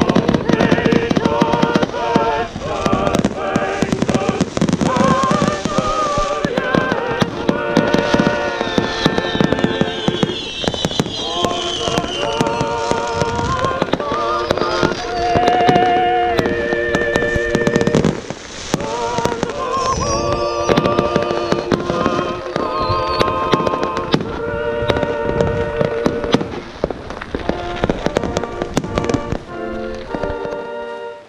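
Fireworks going off in quick succession, with many sharp bangs and crackles, over music with singing.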